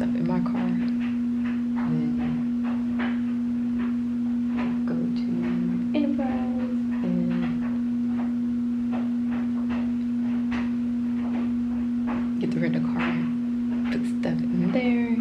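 A steady one-pitch hum, unchanging throughout, with quiet talking over it now and then.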